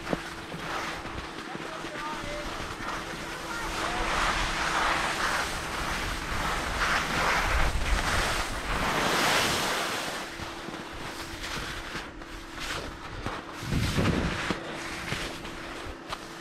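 Wind rushing over the microphone together with snow scraping and hissing under the rider's edges while riding down a snow run, swelling louder for several seconds through the middle and again briefly near the end.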